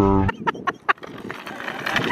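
A small folding hand trolley stacked with plastic storage drawers wheeled over rough concrete: a run of irregular sharp clicks and rattles over a faint rolling noise.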